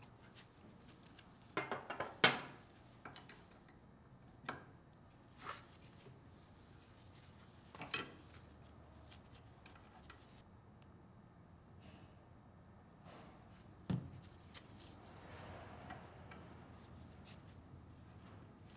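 Intermittent metal-on-metal clinks and clicks of a wrench and steel tubing fittings as connectors are fitted and tightened on a control valve's body. There are sharp clinks about two seconds in and about eight seconds in, and a duller knock near fourteen seconds.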